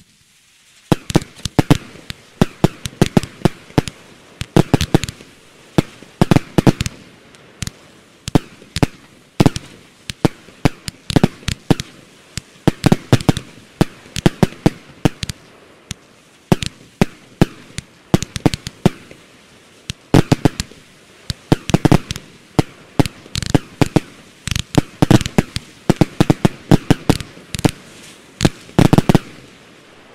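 Nydia 16-shot consumer fireworks battery firing: launch thumps and sharp crackling pops come in loud clusters about every second, one after another with little let-up.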